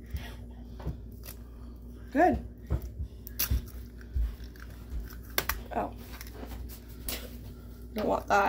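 An egg being tapped and cracked open over a mixing bowl: a run of short taps and cracks of the shell. A brief voice sound comes about two seconds in.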